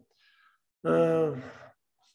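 A man's drawn-out hesitation sound, a voiced 'uhh' of under a second that falls slightly in pitch, after a faint breath in.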